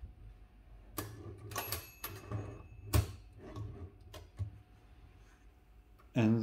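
Margin sliders on the carriage of an Olivetti Lettera 22 portable typewriter being moved and set. It makes several sharp metal clicks, roughly a second apart, with the loudest about three seconds in. A faint metallic ring lingers after the second click.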